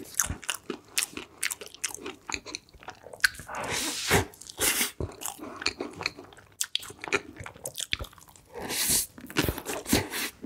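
Close-miked mukbang eating sounds: a person biting into and chewing chocolate-decorated cake, with many short sharp clicks and a few longer noisy crunches, one about four seconds in and one near the end.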